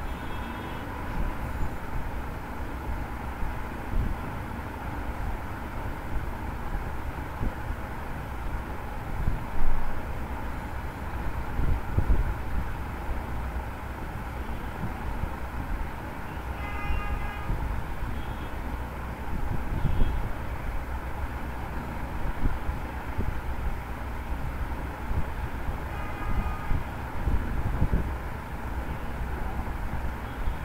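Steady low background rumble with a brief louder swell about a third of the way in, and faint short pitched tones a few times in the second half.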